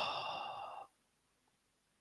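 A man's long, breathy sigh into a close microphone, tailing off a little under a second in: an exasperated exhale while struggling to think of an answer.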